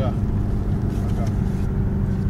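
Steady road and engine noise of a moving car heard from inside the cabin, an even low drone.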